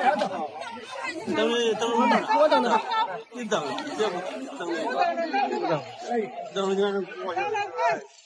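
Speech only: several people talking over one another in lively chatter.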